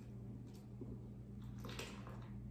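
Faint pouring of a tempered egg-and-milk mixture from a stainless steel bowl into a saucepan of rice and milk, with a wooden spoon stirring and a couple of light ticks, over a steady low hum.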